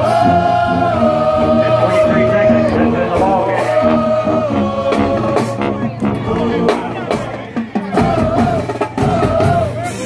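High school marching band playing in the stands: brass, sousaphones among them, holding loud sustained notes over drum and cymbal hits. The music turns choppier in the last few seconds.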